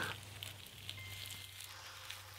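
Faint crinkling and rustling of surgical gauze being unwrapped from a patient's eyes, with a few soft ticks over a low steady hum.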